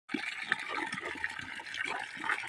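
A stream of water pouring steadily into a shallow muddy puddle, splashing and hissing as it lands.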